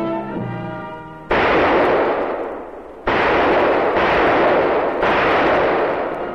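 Four loud gunshots, about a second apart, each with a long reverberating tail. Brass-band music dies away just before the first shot.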